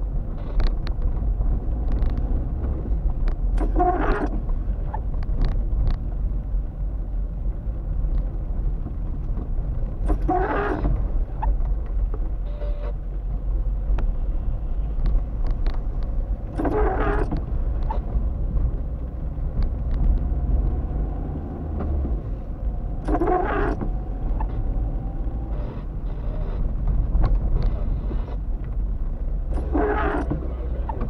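Inside a car on a wet road: steady low engine and tyre rumble, with the windscreen wipers on intermittent, each blade pass a brief rubbing sweep across the wet glass, five passes about six and a half seconds apart.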